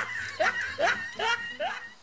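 A person laughing: a run of short laughs, each rising in pitch, about two or three a second, stopping just before the end.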